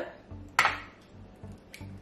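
An egg cracked against the rim of a glass mixing bowl: one sharp knock about half a second in, then a fainter tap near the end.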